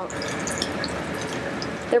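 Carrot latkes frying in hot oil in a skillet: a steady sizzling hiss with small crackles.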